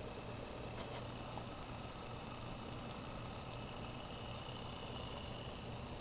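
Faint steady low hum with hiss from a small homemade pulse motor, its balanced rotor spinning while it runs on a supercapacitor with no battery.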